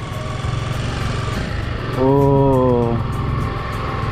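Honda CBR250R's single-cylinder engine running steadily under way, with wind and road noise on the microphone.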